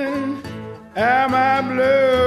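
Acoustic country blues recording: guitar accompaniment under a lead line of long held notes that slide up into pitch. The line breaks off briefly about half a second in, and a new phrase starts about a second in.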